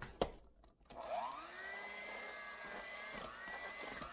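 Proctor Silex electric hand mixer switched on about a second in, its motor whine rising in pitch and then running steadily as the beaters whip a bowl of mashed potatoes.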